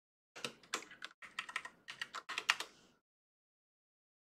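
Computer keyboard typing: a quick run of about a dozen keystrokes, stopping about three seconds in.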